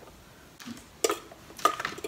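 A few light clicks and taps of a metal utensil against the open Red Copper 5 Minute Chef's non-stick cooking plate and lid, about a second in and again near the end.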